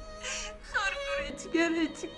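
A woman crying: several short, wavering sobbing wails, over steady background music.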